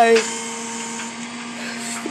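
Tow truck's motor running with a steady, even hum.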